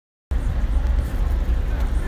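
Steady low background rumble picked up by the phone's microphone, cutting in abruptly a fraction of a second in as the screen recording starts.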